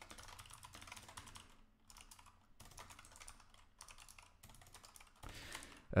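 Typing on a computer keyboard: a quick, irregular run of faint key clicks with brief pauses between bursts.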